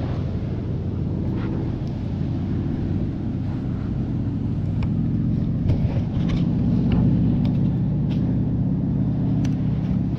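Low, steady rumble of wind buffeting the microphone, a little stronger in the second half, with a few faint scratchy ticks over it.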